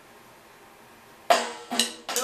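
Drum kit, an electronic kit going by its pads, struck twice: a sudden loud hit with a ringing tail about a second and a quarter in, then a second hit about half a second later, after faint room noise.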